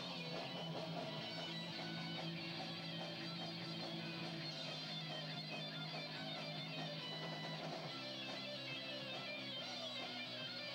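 Live rock band playing, electric guitar over bass, heard from among the crowd on a camcorder microphone. The bass line changes about eight seconds in.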